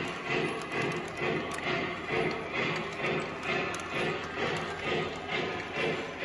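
Lionel Vision Niagara O-gauge model train running on its track at speed, its steady running noise pulsing in an even beat about twice a second.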